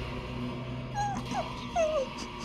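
A person whimpering: three short, high cries that slide in pitch, about a second in, a moment later and near the end, over a steady low hum.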